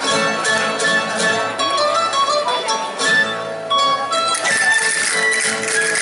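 Traditional jota dance music starts up, with plucked strings playing the melody. About four and a half seconds in, the music fills out with brighter high percussion.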